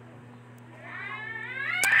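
A cat meowing: one long, drawn-out meow that starts faintly about a second in and grows louder toward the end.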